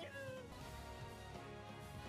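Faint anime episode soundtrack: a high character voice line falling in pitch in the first half second, then held background music notes.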